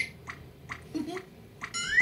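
Cartoon dripping-faucet sound effect: short drips repeating two to three times a second, with a rising plink near the end. The faucet is still leaking because it was not turned all the way off.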